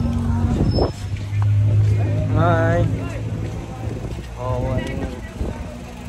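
A steady low engine hum from a motor vehicle, with people's voices over it.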